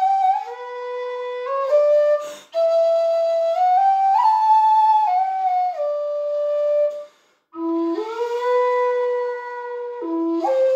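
Chieftain aluminium low D whistle playing a slow tune solo, long held notes stepping between pitches with some slides, breathy in tone. The melody breaks briefly for breaths about two and a half seconds in and again after about seven seconds.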